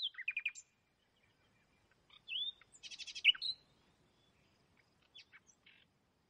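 Birds chirping: short high chirps and quick trills in three separate bursts, with quiet gaps between.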